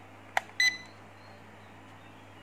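Toy drone remote controller being switched on: a click of its power switch, then a moment later a short high beep from the controller.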